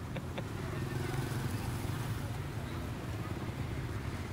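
Motorbike traffic running steadily on the street, with a couple of light clicks just after the start.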